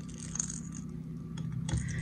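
Hard plastic fishing lures clicking and rattling faintly against one another as gloved hands sort through a pile of them, a few separate small clicks, over a steady low hum.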